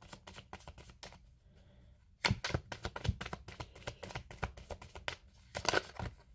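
Tarot deck being shuffled by hand: a quick run of soft card clicks and slaps that pauses for about a second near the start, then picks up again.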